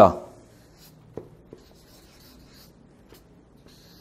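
Felt-tip marker writing on flip-chart paper: faint scratchy strokes with a few light taps of the pen tip.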